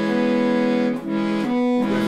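Barcarole Professional chromatic button accordion playing held bass-side notes and chords, the pitches changing about a second in. It is sounding a bass register in which the bass note comes out higher than the lowest note of the chord.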